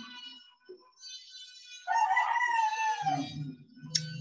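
A loud animal call, about a second long, starting about two seconds in and falling slightly in pitch at its end, over faint background music.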